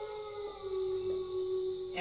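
A man's voice holding one long, steady hummed note, a drawn-out syllable of a word spoken slowly while writing.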